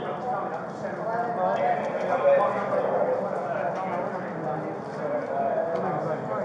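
Footsteps and gear jostling against a body-worn camera as its wearer walks briskly, with a steady murmur of other people's voices behind.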